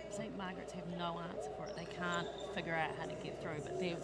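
Faint voices talking in a large sports hall, with a few soft thumps that may be a ball bouncing on the court.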